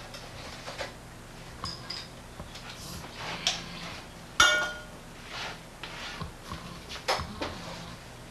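Glass beer bottles clinking and knocking, with scattered clicks, while a bottle is handled at the refrigerator; one sharp ringing clink about four and a half seconds in is the loudest.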